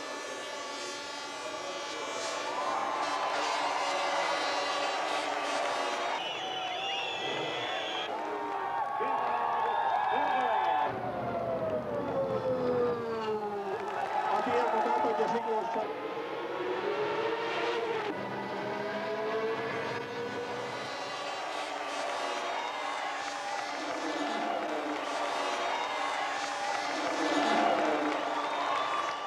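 Formula 1 car engines running and passing, their pitch sweeping up and down, in a run of cut-together archive clips with crowd noise and voices.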